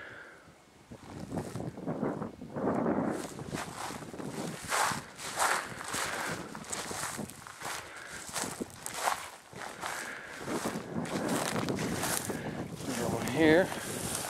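Footsteps walking through dry bog grass and low brush: an irregular run of rustling, crunching steps. A short vocal sound near the end.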